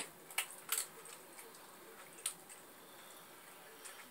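Faint, sparse crinkles and clicks of a raccoon picking at and eating from a black plastic trash bag, three short ones in the first two and a half seconds over quiet room tone.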